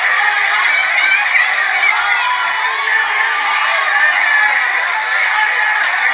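A crowd of people shouting over one another in a heated confrontation, many voices at once and no single clear speaker. It sounds thin and tinny, like a phone video played back.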